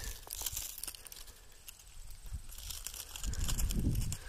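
Dry, dead sunflower leaves and stalks crackling and rustling as a person pushes through them on foot, with scattered small snaps.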